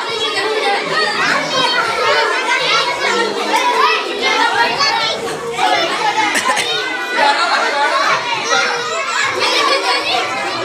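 A crowd of children's voices chattering and calling out over one another, a dense, steady, loud din with no single voice standing out.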